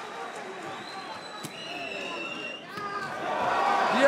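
Arena crowd at a cage fight: many voices and shouts, with one sharp smack about a second and a half in, the noise swelling over the last second.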